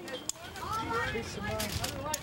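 People's voices talking, with a few short clicks in between.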